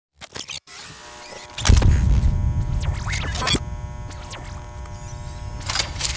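Sound-designed logo sting: a few clicks, then a deep bass hit about 1.7 s in that carries on under a held electronic drone, with whooshing sweeps rising and falling over it.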